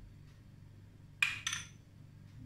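A metal spoon clinks twice against a small glass bowl of tomato sauce, two quick ringing clinks about a second in.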